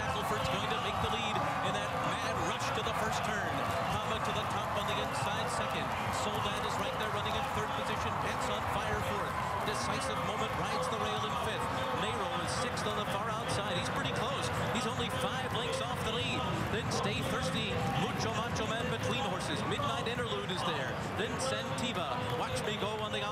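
Galloping Thoroughbred racehorses drumming their hooves on the dirt track, heard under the steady noise of a large race crowd.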